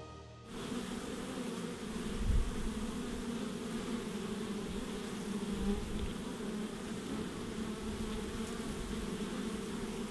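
Many honey bees buzzing at a hive entrance: a steady, even hum that starts about half a second in.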